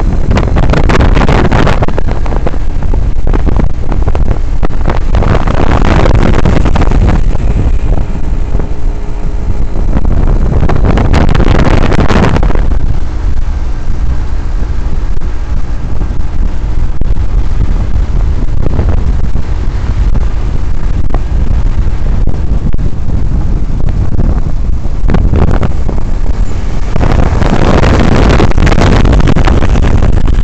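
Wind buffeting the microphone of a camera carried on an open motor vehicle on the move, over a steady low engine drone. The wind swells into louder gusts several times, the last near the end.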